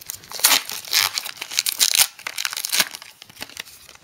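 A foil trading-card pack being torn open and crinkled by hand, in a series of quick rips that thin out near the end.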